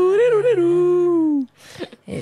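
A woman singing one long held note a cappella, with a quick melodic turn at the start and the pitch sinking slightly before it stops about a second and a half in.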